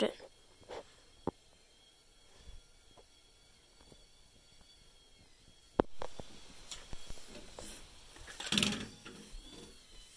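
Quiet small room broken by a few sharp clicks and knocks, the loudest about six seconds in, and a short breathy rustle a little before the end.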